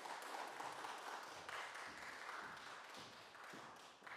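Audience applause dying away, thinning and fading toward the end, with a few low thuds underneath.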